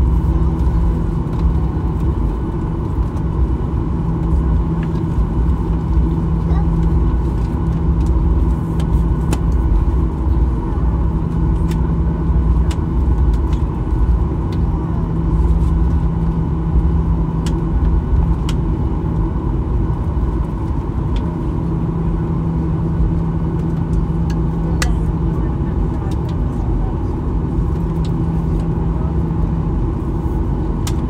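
Airliner cabin noise while taxiing: a steady low rumble with an even engine hum that comes and goes in strength.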